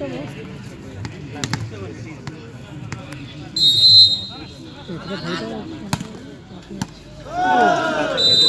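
A referee's whistle gives one short, shrill blast about halfway through, the loudest sound, over the voices of players and spectators. A few scattered sharp knocks of a volleyball bouncing on the court are heard, and shouting rises near the end.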